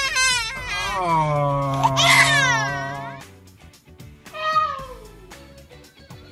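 Baby crying in loud, high-pitched wails: one long wail that falls in pitch as it ends, then a shorter wail about four and a half seconds in.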